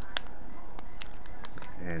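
Scattered faint clicks and crinkles from hands handling a lithium-polymer battery pack's foil pouch cells and plastic wrap, over a steady low hum. A man's voice starts right at the end.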